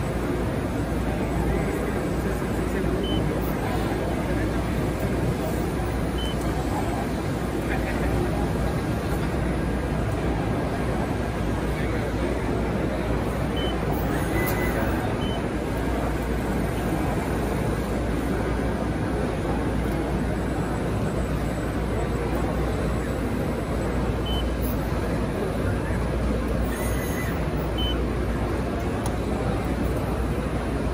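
Steady hall background din: indistinct crowd chatter over a constant low hum, with no clear strokes or impacts from the machine. A few faint short high beeps sound now and then.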